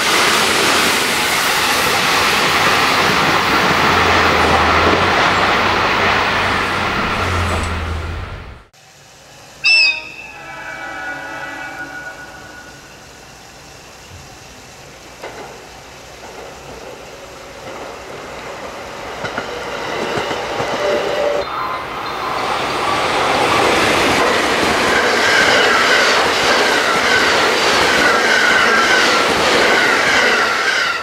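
A JR West 223 series 1000 electric train passes close by at high speed, a steady loud rush of wheel and running noise that cuts off abruptly about a third of the way in. Soon after comes one short, loud train horn blast, then a quieter stretch. From about two-thirds in, another train passes, with a regular clatter of wheels over rail joints.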